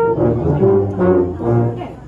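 A solo trombone's held note ends right at the start, and the band's brass carries on with a short passage of low accompanying notes that thins out near the end.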